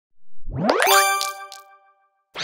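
Intro sound effect: a rising sweep that lands on a bright, bell-like chime about a second in, which rings on several tones and fades away.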